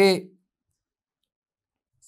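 A man's voice finishing a word in the first moment, then silence.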